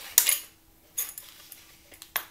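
Adderini pistol crossbow being cocked by its lever: a sharp mechanical click just after the start, then a fainter click about a second later as the lever is worked.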